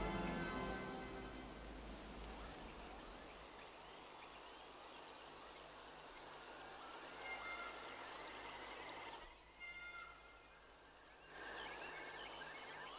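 Music fading out in the first second or two, then faint outdoor ambience with scattered bird chirps.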